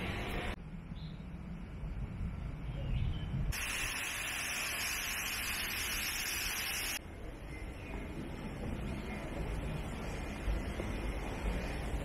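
Outdoor ambience with a steady low wind rumble on the microphone. For about three seconds in the middle, a loud, even, high-pitched insect hiss, like a cicada chorus, cuts in and then cuts out abruptly.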